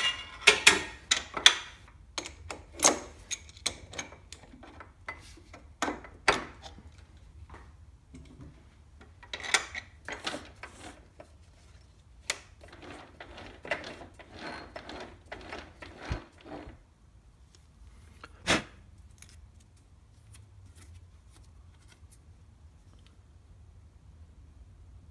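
Clicks, knocks and short metal rattles of a three-jaw lathe chuck being unscrewed from the Logan 10" lathe's threaded spindle nose and lifted off, with one louder clunk about eighteen seconds in, then it goes quiet.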